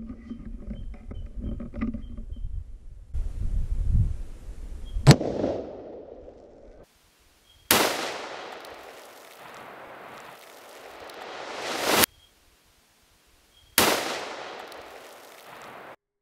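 A single shot from a Howa 1500 bolt-action rifle in .243 Winchester cracks about five seconds in, with an echoing tail. Then two more sudden loud bursts follow, near eight and fourteen seconds, each fading away slowly. Between them a noise swells and cuts off abruptly, as edited slow-motion replays of the shot.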